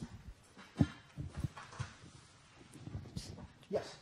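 Room noise during a pause in a lecture hall: a few soft low knocks and faint murmurs, then a short spoken "Yes" near the end.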